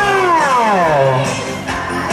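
Loud music playing, with a long pitched note that glides steadily downward over the first second before the music carries on.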